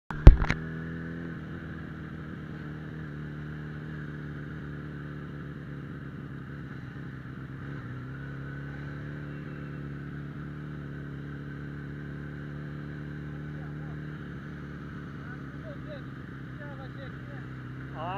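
Suzuki Bandit 650N inline-four motorcycle engine running at a steady cruise, its note dropping a little about a second in and again around eight seconds in. A loud sharp knock right at the start.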